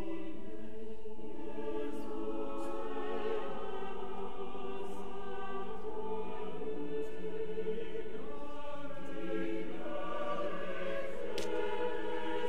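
A choir singing a slow piece in long held chords, the harmony shifting about eight seconds in and again near ten seconds.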